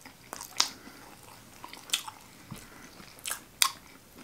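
A person chewing food close to the microphone, with a handful of sharp wet mouth clicks at irregular intervals.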